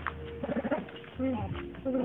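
A dove cooing: a few short, low coos.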